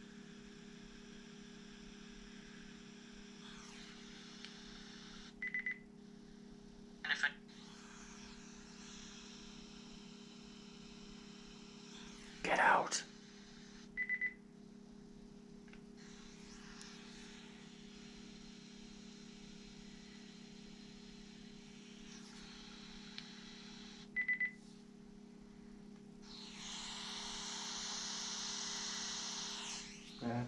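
A handheld EVP recorder playing back: a steady low hum and faint hiss, broken by three short high beeps roughly nine seconds apart and a few brief sharp sounds, the loudest about twelve seconds in. Near the end comes about three seconds of louder hiss.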